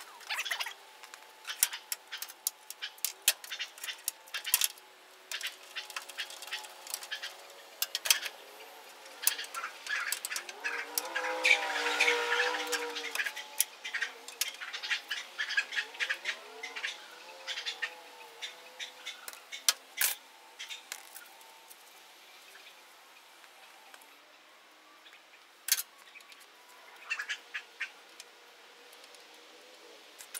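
Hand tools and loose metal parts clinking and tapping against a car's stripped steel front end, in many sharp clicks. A short run of squeaky, chirping pitched sounds comes near the middle.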